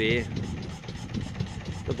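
Small wooden motorboat's engine running steadily at low speed, a constant low rumble.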